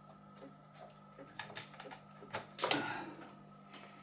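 Clicks and knocks of plastic and metal as the case of a Weller WSD 80 soldering station is handled and opened, and its front panel with the circuit board comes out. A sharper knock sounds about two and a half seconds in.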